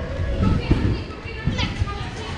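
Children chattering and playing in a large hall, with a few dull low thumps of bodies bouncing and landing on trampoline beds. A short high rising squeak comes about one and a half seconds in.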